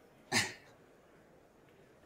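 A single short cough-like burst from a person, lasting about a third of a second, about half a second in, over faint steady room tone.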